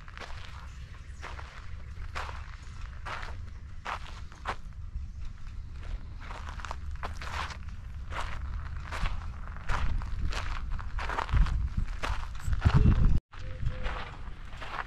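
Footsteps on dry, sandy dirt at a steady walking pace, about two steps a second, over a low rumble. A few louder low thumps come near the end, followed by a sudden brief cut-out.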